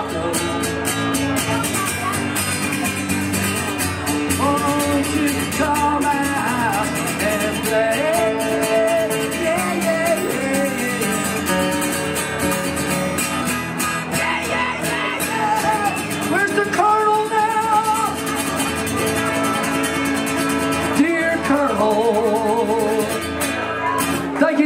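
Two acoustic guitars strummed together, with a man's voice singing long wavering notes over them several times.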